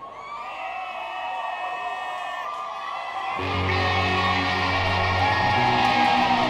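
Crowd whooping and cheering, then about three and a half seconds in an electric guitar comes in with a loud, sustained low chord that rings on.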